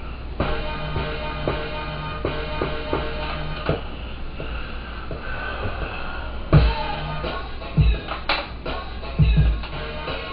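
Hip-hop beat played back from a pad sampler: a chopped sample of sustained chords over a low note, with heavy kick drums coming in about six and a half seconds in.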